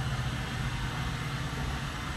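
Steady, even hum and hiss of an Otis hydraulic elevator car travelling down, heard inside the cab.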